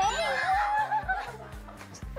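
Upbeat background music with a steady, bouncing bass beat, under laughter and high gliding cries during the first second or so.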